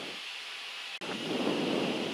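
Steady rushing of airflow and engine noise on the flight deck of a Gulfstream G-IV business jet in the climb. About halfway through it briefly drops out, then comes back fuller and louder.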